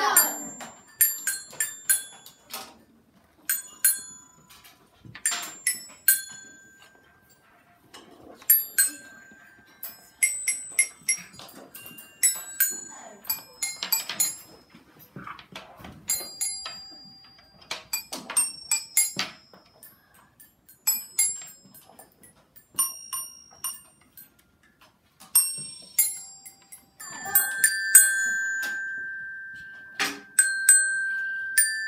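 Children's metal-bar glockenspiels struck with mallets: single notes and short runs at uneven spacing, each ringing briefly. Near the end one note rings on for a few seconds.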